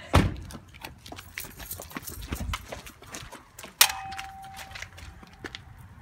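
Footsteps and handling knocks, with a loud thump at the very start. About four seconds in there is a click followed by a steady mid-pitched beep that lasts over a second.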